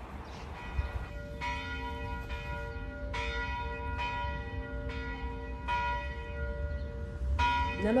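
Bells ringing: a series of struck bell tones beginning about a second in, about seven strikes at uneven spacing, each ringing on and overlapping the next, over a low steady rumble.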